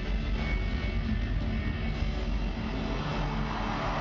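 Live reggae-rock band playing loudly on a concert PA, recorded from the audience, with a heavy low rumble from the bass. A brighter crowd-like hiss rises near the end.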